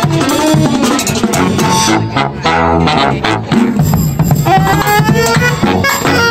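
A marching band of saxophones, trumpets, sousaphones and drums playing live. A held chord sounds about midway, then the horns climb in a rising run near the end.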